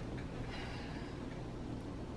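Quiet room tone with a steady low hum and faint, indistinct handling noise.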